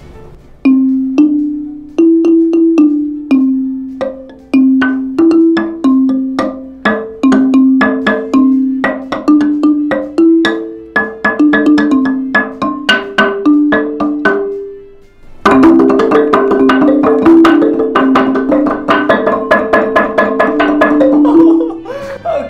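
Large wooden xylophone struck with mallets. It plays a slow tune of single low notes, each fading quickly. About two-thirds of the way through, a held note dies away and the playing turns into a fast, dense flurry of notes from two mallets.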